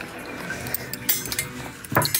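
Scattered light clicks and clinks of small hard objects, several close together in the second half, over faint room noise.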